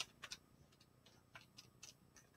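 Near silence with a few faint, short taps at uneven intervals: one at the start, a pair just after, and a small cluster in the second half.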